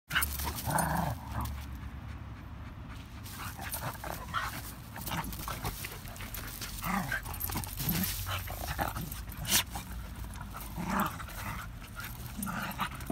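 Two dogs play-fighting on wood chips: short dog vocalizations every few seconds, with panting and scuffling rustles from the wrestling.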